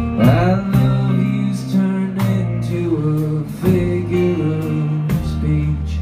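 Live band music: a drum kit keeping time under sustained keyboard chords with acoustic and electric guitars, the chords changing every second or so.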